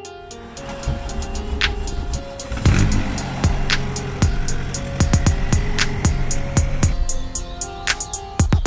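Hip-hop beat music playing over the diesel engine of a Volkswagen Caddy Mk1 pickup as it is started with the key and runs.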